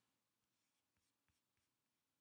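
Near silence, with two very faint ticks about a second in.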